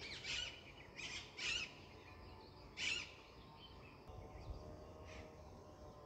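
Birds chirping faintly in the background: a handful of short high calls in the first half, with one fainter call near the end.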